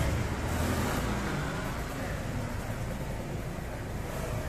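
Steady low rumble of road traffic, with faint voices fading out in the first second or so.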